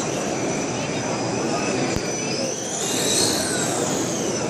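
Small electric motor of a solar-powered remote-control race car whining as it runs past, the whine rising and falling about three seconds in, over steady hall noise. A single sharp click about two seconds in.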